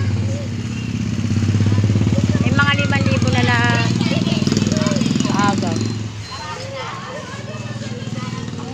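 A small engine running steadily nearby, fading away about six seconds in, with people's voices calling out over it.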